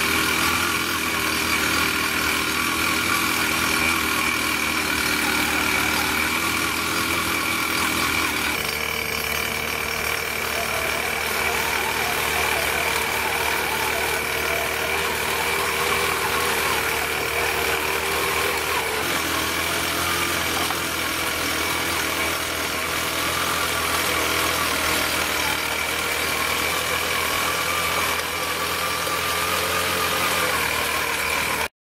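Small engine of a power weeder running steadily, its note shifting about eight seconds in and again about nineteen seconds in.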